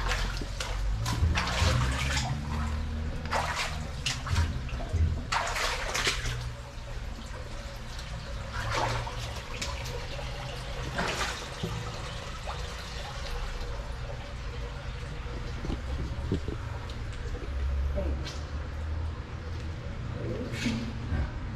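Footsteps splashing through shallow water on the floor of a concrete culvert, a string of splashes that thins out after the first dozen seconds, over a steady trickle of running water.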